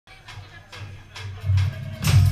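Live band with acoustic and electric guitars, bass and drum kit playing the quiet opening of a song: light strokes about twice a second over a low bass line, growing louder in the last half second.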